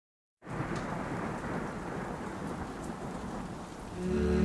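Steady rain with a low thunder-like rumble, starting suddenly about half a second in and easing slightly toward the end.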